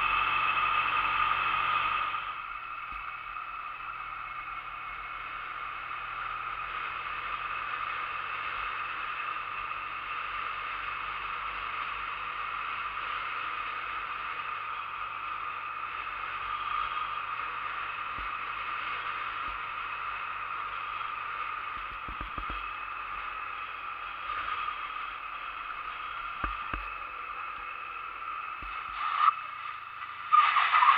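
Steady riding noise from a 2008 Honda Nighthawk 250 motorcycle at cruising speed: wind over the bike-mounted camera and an even engine drone, a little louder for the first two seconds, with a few faint knocks from road bumps in the second half.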